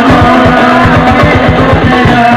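Loud live sholawat devotional music: a fast drum beat under a sustained melody line.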